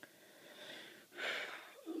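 A soft breath close to the microphone, a faint airy hiss that swells briefly a little over a second in.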